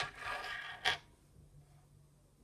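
A small rock scraped across a hard surface as it is set down, with a click at the start and another just under a second in.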